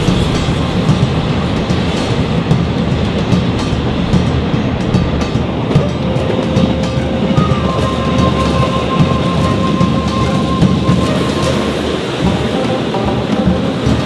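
Electric commuter trains running past on the tracks, a steady rumble with wheels clattering over the rails. A steady high whine joins in around the middle and fades out about three quarters of the way through.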